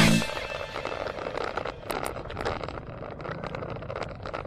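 Riding noise picked up by a bicycle-mounted camera: a steady rush of wind and road noise with frequent irregular clicks and rattles.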